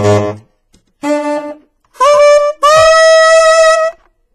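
Saxophone playing four separate notes that climb from a low note to a high one, the last held for over a second. It is a check that the mouthpiece sounds even from the low to the high register.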